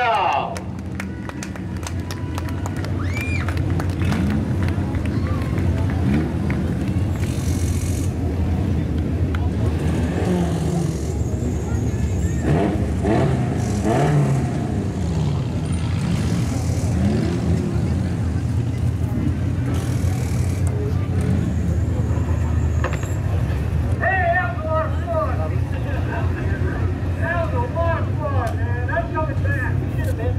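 Sport compact dirt-track race cars' engines idling and running slowly, a steady low drone. Several people's voices are heard over it in the last few seconds.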